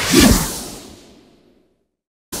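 A whoosh transition sound effect, peaking just after the start and fading away over about a second and a half.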